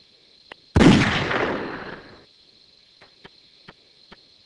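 A single gunshot, sudden and loud, trailing off over about a second and a half.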